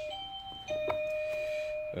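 Electronic doorbell chiming a two-note ding-dong: a short higher note, then a lower note held for about a second, with a light click in the middle.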